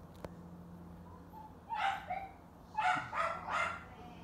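A dog barking, a single bark about two seconds in and then three more in quick succession, over a faint steady hum. A single click is heard right at the start.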